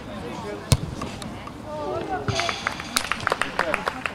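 A football kicked once, a sharp thud about three-quarters of a second in, with distant shouts from players on the pitch. From about halfway through comes a rapid run of quick clicks.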